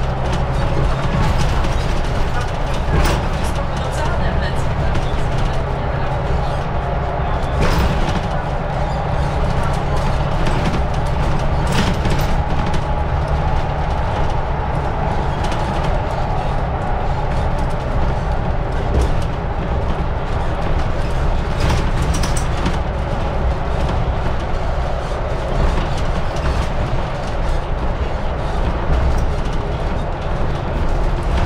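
Inside a Mercedes-Benz Citaro city bus on the move: a steady drone of engine and road noise, with a few sharp rattles or knocks from the body.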